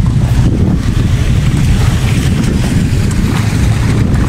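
Wind buffeting the microphone: a loud, steady, uneven low rumble.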